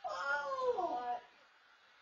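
A man's loud, high-pitched shout of excitement, wavering and falling in pitch, that breaks off after about a second. It is heard through a home security camera's microphone.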